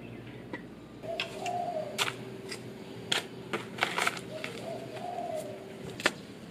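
A dove cooing twice, each call about a second long. Scattered light clicks and knocks come from a sanding block and tools being handled in a cardboard box.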